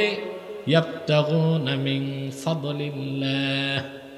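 A man's voice chanting into a microphone in long, drawn-out notes, the sung delivery of a Bengali waz sermon.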